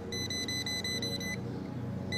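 Pen-type non-contact voltage tester sounding a steady high-pitched beep tone against a refrigerator's metal case, cutting off about a second and a half in. The tone means the refrigerator's case is live: a bootleg-ground receptacle with hot and neutral reversed has put line voltage on the chassis.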